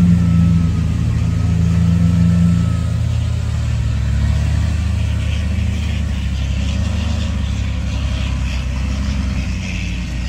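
Diesel engine of a loaded ten-wheel dump truck running under load as it drives through loose soil, loudest in the first few seconds. A faint high whistle sounds over it for the first few seconds.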